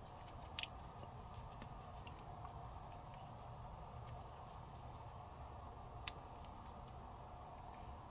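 Hex key turning a small screw in a pistol frame: faint scattered ticks of metal on metal, with two sharper clicks about half a second in and about six seconds in.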